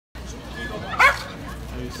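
A police dog barks once, loud and short, about a second in, over people talking.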